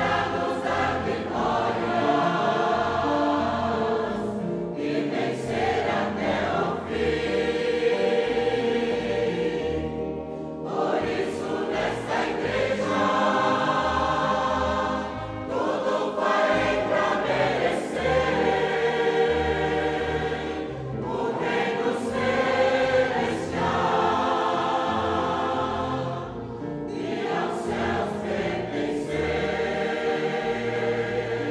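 Choir singing a hymn in long held phrases, with brief breaks between phrases about every five to six seconds.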